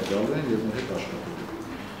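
Only speech: a man talking in Armenian, his voice steady and a little softer near the end.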